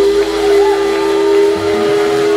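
A blues band holding its final sustained chord, a steady loud ringing tone, with crowd voices starting to rise near the end.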